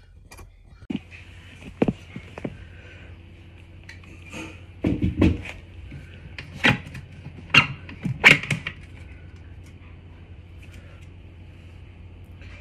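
Clicks and knocks of a Shimano GRX crankset being worked loose and its spindle pulled out of the bike's bottom bracket: about ten separate sharp clunks, the loudest bunched between the middle and the last quarter, then only a low steady background.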